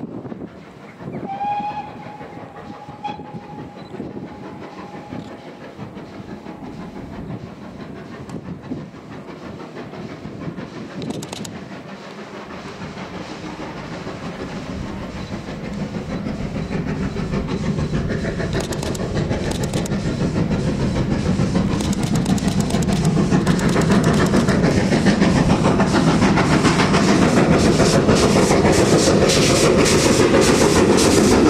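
GWR Castle Class four-cylinder 4-6-0 steam locomotive 4079 Pendennis Castle approaching under steam with a train of coaches. A distant whistle blast starts about a second in and is held for a few seconds. Then exhaust beats and wheel-on-rail clatter grow steadily louder as it nears.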